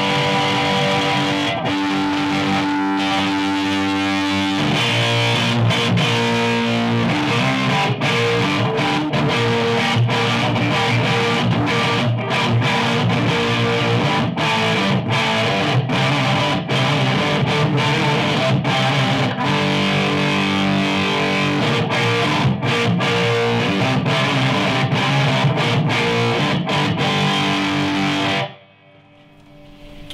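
Heavily distorted electric guitar played through a Laney amp on a double-neck electric guitar: held chords for the first few seconds, then fast riffing broken by many short, sharp stops. The playing cuts off suddenly about a second and a half before the end.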